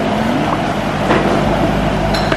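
A steady low engine hum, with faint voices behind it.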